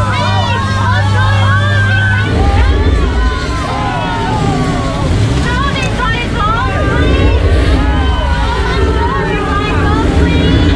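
A tour-boat skipper talking over the boat's microphone and loudspeaker, over a low, steady boat motor hum and rushing, churning water. About two seconds in, the steady hum gives way to a rougher low rumble.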